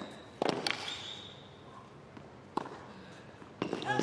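Tennis ball struck by racket during a point: a sharp pop about half a second in and another about two and a half seconds in, with the court otherwise quiet between them.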